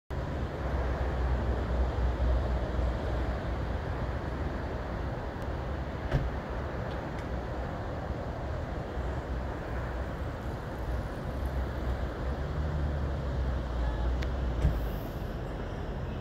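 Steady rush of ocean surf breaking on a beach, with an uneven low rumble beneath it. A couple of brief knocks, about six seconds in and near the end.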